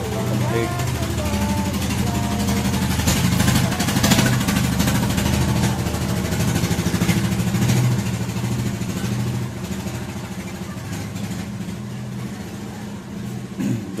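A motor running steadily with a low rumble, louder about four seconds in and easing off after about ten seconds.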